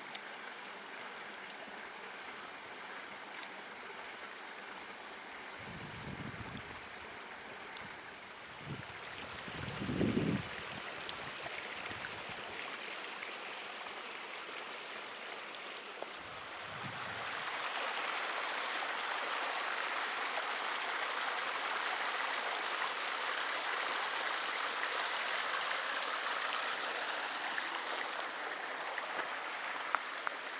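Small mountain creek running over rocks, a steady rush of water that grows clearly louder about two-thirds of the way through. There are a few brief low rumbles of wind on the microphone early on.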